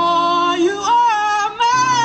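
A young woman singing a slow ballad through a PA microphone, holding and bending long notes over sustained instrumental accompaniment, which drops out briefly about three-quarters of the way through.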